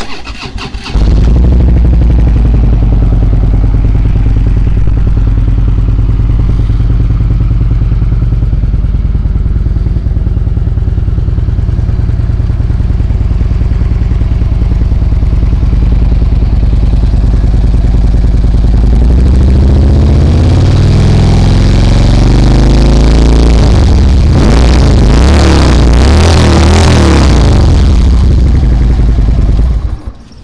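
A 2012 Harley-Davidson Ultra Limited's 103-inch fuel-injected Twin Cam V-twin, breathing through Rinehart slip-on mufflers, starts up about a second in and idles steadily. Past the middle it is revved several times, the pitch rising and falling and getting louder, then it settles back to idle.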